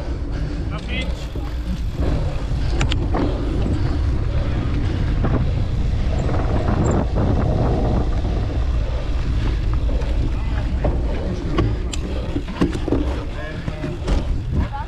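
Wind rumbling on an action-camera microphone as a cyclocross bike coasts downhill over rough grass, with scattered knocks and rattles from the bike. Brief shouts from spectators come through now and then.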